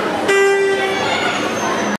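A short, loud horn blast of about half a second, starting a third of a second in, over a steady background of voices from the crowd in the pool hall.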